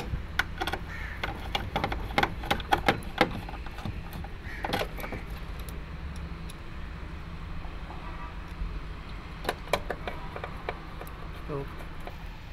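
Sharp clicks and knocks of a screwdriver and wiring being handled against the metal control box of a reefer unit, densest in the first few seconds and again near the end, over a steady low machinery hum.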